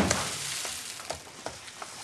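Dry cereal poured from a large plastic tub into a bowl and overflowing, the pieces rattling into the bowl and scattering over the table. It is loudest right at the start as the pour begins, then thins into scattered ticks.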